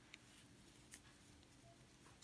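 Near silence: faint room tone with two soft ticks, one just after the start and one about a second in, as a crochet hook is worked through yarn.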